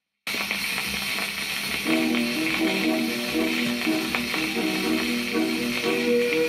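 Shellac 78 rpm record playing on a portable record player: it starts suddenly with surface hiss and crackle from the lead-in groove. About two seconds in, a 1933 tango recording begins, a rhythmic melody that plays under the hiss.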